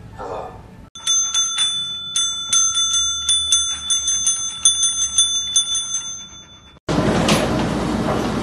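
Desk service bell rung by a dog, dinged over and over in quick succession, about three times a second, starting about a second in. It stops near the end, where a loud, even rushing noise with a thump takes over.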